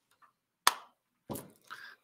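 A single sharp knock about half a second in, followed a moment later by a short, softer breathy sound.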